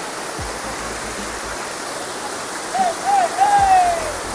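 Dunn's River Falls: water running steadily over the rock terraces of the cascade. A person's voice calls out briefly over it near the end.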